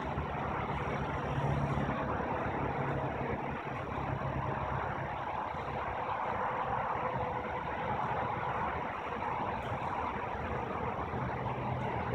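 A vehicle engine idling steadily.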